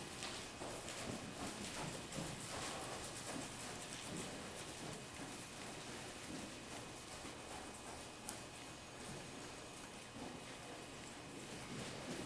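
Hooves of an appendix quarter horse trotting in hand on soft dirt arena footing: a faint, irregular patter of muffled beats, with one sharp click about eight seconds in.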